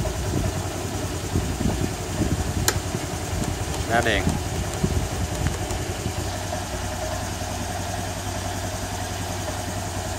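Honda Air Blade 125's single-cylinder four-stroke engine idling steadily, with one sharp click about three seconds in.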